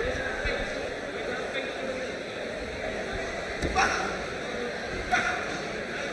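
Murmuring crowd and distant voices echoing in a boxing hall, with two short, sharp smacks of gloves landing, one about two-thirds of the way in and another near the end.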